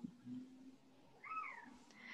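A faint, short, high-pitched cry about one and a half seconds in, rising and then falling in pitch over about half a second.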